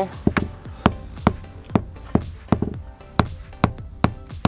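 A hammer striking the end of a screwdriver set against a fuel pump lock ring, tapping the ring counterclockwise to loosen it: about ten sharp strikes, two or three a second.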